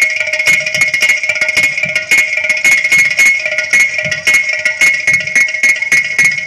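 Live percussion ensemble of hand drums and clay pots played in a fast, even beat over a steady, high held drone.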